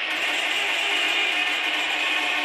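Electronic techno from a DJ set played over a large festival sound system. It is a dense, buzzing, grinding high-pitched texture with little bass and a faint repeating pulse underneath.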